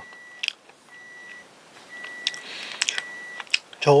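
Soft mouth clicks and smacks of chewing a sticky rice-cake bread, a few scattered clicks with a short rustle near the middle. A faint high tone comes and goes about four times underneath.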